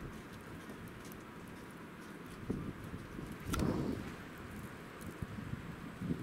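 Wind in a snow storm, with a gust buffeting the microphone as a short low rumble about three and a half seconds in.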